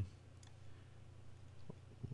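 A couple of faint computer mouse clicks, about half a second in and again near the end, over a low room hum.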